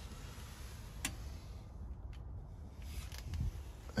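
Quiet low background rumble with two faint, brief clicks, about one and two seconds in.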